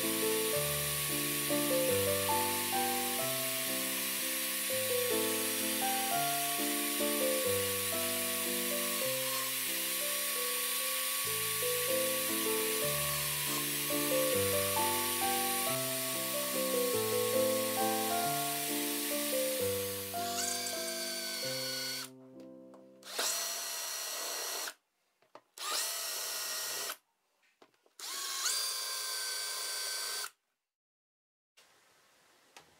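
Background music with a stepping melody over the steady whine of an electric drill in a drill stand boring holes in acrylic sheet. After about twenty seconds the music stops and the drill is heard alone in four short runs. In each run the whine rises as the motor spins up, holds steady, then cuts off abruptly.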